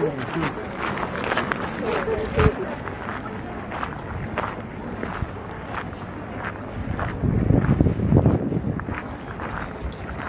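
Footsteps of people walking on a shrine path, about two steps a second, with voices of people around them. A louder low rumble comes in about seven seconds in and lasts more than a second.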